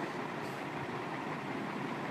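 Steady background noise with no distinct events, a constant even hiss-like rumble.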